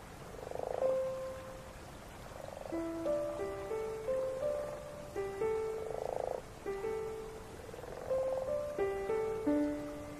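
Slow, soft instrumental music of single decaying notes stepping up and down, with a frog croaking in short buzzy pulses about four times: about a second in, near the middle and toward the end.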